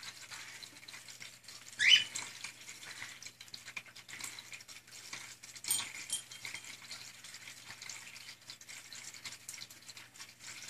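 Cockatiel chirping: a short rising chirp about two seconds in and a shorter, sharper one around six seconds, over a faint rustling hiss.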